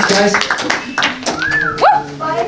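Audience applause thinning out amid voices, with one loud, high sliding cry from the crowd near the end that swoops up in pitch.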